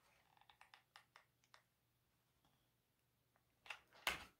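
Near silence with a quick run of faint clicks in the first second and a half: a hot glue gun's trigger being squeezed as glue is laid along felt. A single louder tap near the end as the glue gun is set back down.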